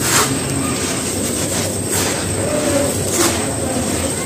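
Clumps of dry, fine sandy dirt crushed and crumbled by hand, grains pouring and rustling over loose dry sand. Three sharper crunches stand out: near the start, about two seconds in, and just past three seconds.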